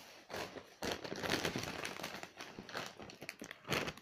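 Crinkling of a large potato chip bag being picked up and handled, an irregular crackle starting about a second in and going on to the end.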